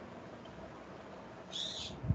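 A bird calling, probably from outside the room: one short, high call near the end, over a faint steady hum.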